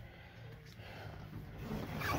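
Faint low rumble and rustle: handling noise from a hand-held phone camera being moved about while a person shifts his body, growing a little louder toward the end.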